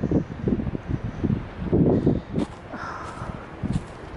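Irregular footsteps and handling rumble from a handheld camera carried while walking off a paved path onto grass, with wind on the microphone.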